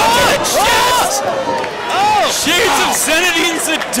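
Men's voices shouting excitedly, loud and high-pitched, with crowd noise beneath them during a wrestling bout.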